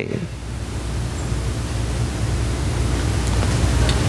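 Steady hiss with a low hum underneath, slowly getting louder: the room tone and electrical noise of the recording and sound system, with no speech.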